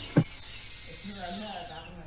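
Hexacopter brushless motor spinning its propeller, a high whine that slides slowly down in pitch as the motor slows, with one sharp click about a fifth of a second in. The motor speed is being driven by an ultrasonic sensor that has sensed an obstacle.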